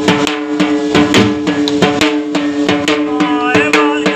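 Large rope-laced drums beaten with curved sticks in a quick, even rhythm of about four strokes a second, over a steady droning note: folk devotional drumming.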